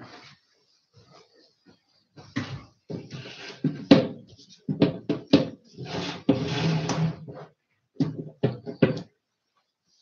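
Papers and desk items being moved about and set down on a wooden desk: an irregular run of knocks, bumps and rustles, loudest between about two and nine seconds in.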